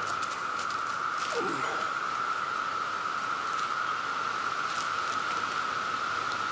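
Faint rustling and a few light clicks and knocks of climbing gear as a man steps up onto a strap-on tree platform, over a steady high-pitched hum.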